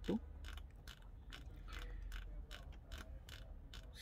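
Magnamed OxyMag ventilator's rotary control knob being turned, giving a run of faint quick clicks, about four or five a second, one for each step as the patient height setting counts up. A low steady hum lies underneath.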